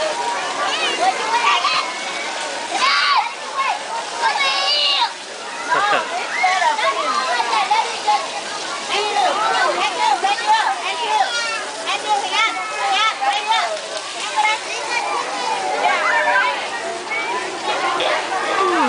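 Many children's voices talking and calling out over one another, with the steady spray and splash of splash-pad water jets underneath.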